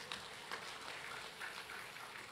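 Faint applause from a seated audience in a hall, an even patter with no voices over it.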